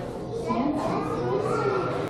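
A young child's voice making drawn-out, fussing sounds with one long held note through the middle. It is the sign of a toddler growing impatient.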